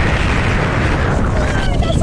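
Wind buffeting a phone's microphone: a loud, rough, steady rumble.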